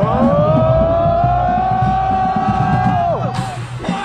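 A group of band members chanting a long, loud 'ooohhh' in unison that slides up in pitch at the start, is held for about three seconds and then falls away, with a short burst of noise near the end.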